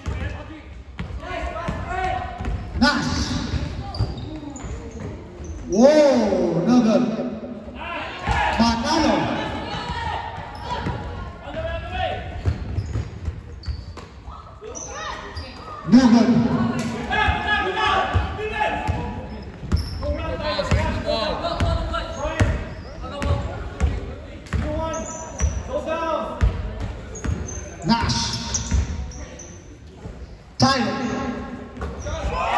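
Basketball bouncing on a hardwood gym floor as players dribble, the knocks echoing in the large hall, with voices calling out over it, loudest about six seconds in and again around sixteen seconds.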